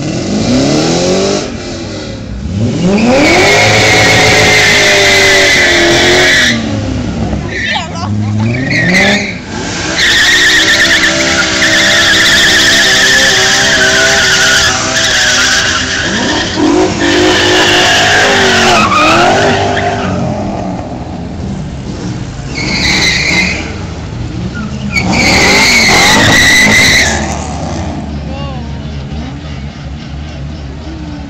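Drift cars sliding past one after another, engines revving up and down at high revs while the tyres squeal loudly. Several loud passes, the longest lasting about ten seconds midway, then quieter near the end.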